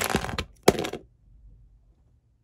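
LEGO bricks and minifigures clattering as a built LEGO room is smashed apart, the crash dying away in the first half second, followed by one sharp plastic crack.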